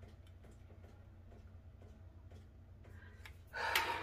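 A woman's sharp, breathy gasp near the end, over a quiet room with a steady low hum.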